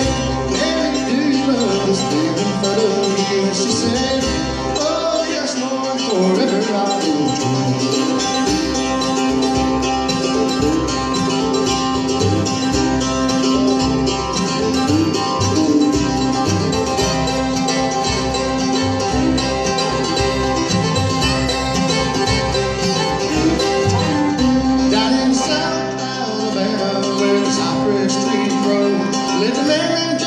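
Live bluegrass band playing an instrumental break: fiddle, five-string banjo, acoustic guitar, mandolin and upright bass.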